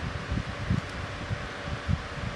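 Soft rustling and faint low bumps from a hand working a felt-tip pen over a colouring-book page, over a steady background hiss.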